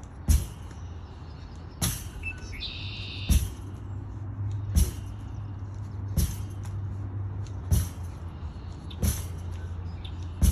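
Lacrosse ball smacking against a rebounder in a steady wall-ball rhythm: seven sharp hits, about one every one and a half seconds. A bird chirps briefly near the third second, and a faint low hum runs underneath from about then on.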